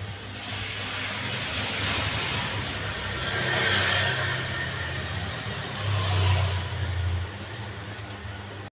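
Electric hair clipper buzzing steadily with a low hum, its cutting noise growing louder around four and six seconds in as it passes over short hair.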